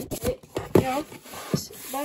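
A cardboard sleeve being slid back over a diecast car's display box: rubbing and scraping of cardboard with a few sharp knocks, the strongest about three quarters of a second and a second and a half in.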